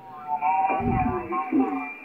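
A voice received over shortwave radio in upper sideband on the 17-metre amateur band, coming from the transceiver's speaker with a narrow, tinny sound cut off above the voice range. Steady whistling tones sit behind the voice.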